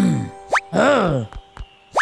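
Cartoon sound effects: a quick rising whistle-like plop about half a second in and again near the end, with a cartoon character's wordless, puzzled grunt between them.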